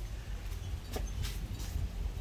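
Steady low background rumble, with a faint tap about a second in.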